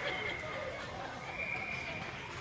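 Indistinct voices of people in an ice rink, over a thin steady whine.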